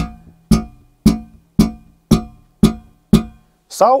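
Yamaha 735A five-string electric bass played through an Ampeg amp: seven thumb slaps on the same low note, about two a second, each a sharp attack that rings and fades before the next. The slaps use the thumb held in line with the string so that it strikes through it.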